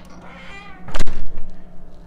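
A door swinging shut: a brief pitched squeak, then a loud slam about a second in.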